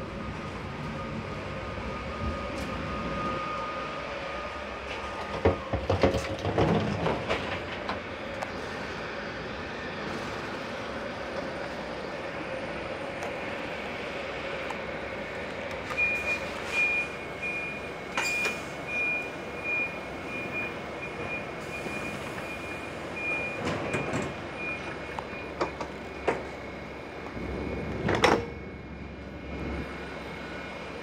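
Steady hum of a stationary passenger train carriage, with a few knocks and clatters about six seconds in and again near the end. From about halfway, a high electronic beep sounds on and off for some ten seconds at the carriage door: the door's warning signal.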